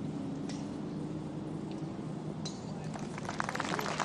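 A golf putt: a faint tap of the putter on the ball about half a second in, a sharper click about two and a half seconds in as the ball drops into the cup, then the gallery starts applauding near the end.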